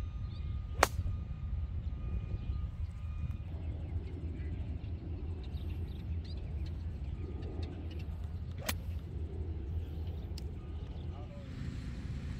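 A golf iron striking a ball, a sharp crack about a second in, then a second strike near the nine-second mark and a fainter click soon after, over a steady low rumble.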